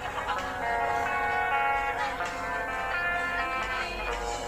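Live band music from a concert recording: electric guitar with a singer holding long notes.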